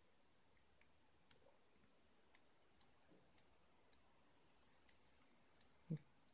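Near silence broken by faint, sharp clicks, about eight of them at uneven intervals, from the laptop's controls as the photo viewer is worked.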